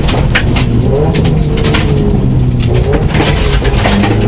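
Subaru STI rally car's turbocharged flat-four engine heard inside the cabin, falling in pitch as the car slows hard from about 60 to 30 mph for a tight right-hand corner on gravel, with a short rise in pitch near the end. Gravel clicks and knocks against the car's underside throughout.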